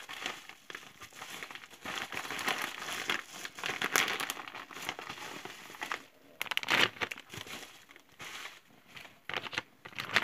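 Paper crinkling and rustling as an envelope and the mailed items inside it are handled and opened. The sound comes and goes, with short pauses in the middle and near the end.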